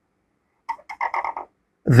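Dry-erase marker squeaking on a whiteboard as it draws the curve of a letter. The squeak comes as a quick chatter of six or seven short squeaks about a second in, lasting under a second.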